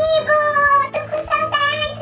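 A high-pitched voice singing two or three long, held notes, with a steady background music bed underneath.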